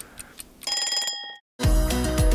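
Stopwatch-style ticking, then a ringing bell chime marking the end of the 60-second timer, a brief silence, and music with a heavy bass beat starting shortly before the end.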